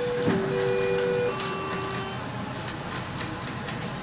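Schindler elevator's electronic chime: a higher and a lower steady tone that overlap and alternate for about two seconds, then die away, followed by scattered light clicks.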